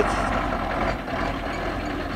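Steady outdoor background noise with a low rumble, no clear single event.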